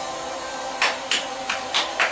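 The last of a held sung note with backing music fades out, then a single pair of hands claps steadily, about four sharp claps a second, starting about a second in.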